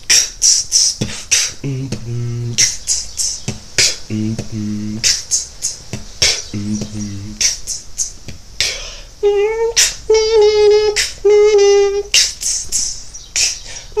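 Vocal beatboxing by one person: a fast run of mouth-made clicks, snare and hissy hi-hat strokes, broken up by short deep bass notes. From about two-thirds of the way in, a higher buzzing pitched tone is held between the percussive hits.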